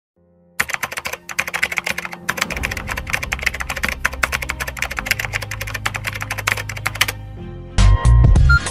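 Rapid keyboard typing sound effect, a dense run of quick clicks, over low steady background music. Just before the end a much louder passage of music comes in.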